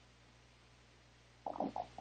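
Quiet room tone: a faint steady low hum and hiss from the microphone. Near the end come a few short, soft mouth sounds as the presenter draws breath to speak.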